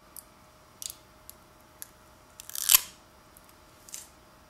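Scattered light clicks of a small plastic module being handled, with one brief crinkling rustle about two and a half seconds in as the protective plastic film is peeled off a small solar panel.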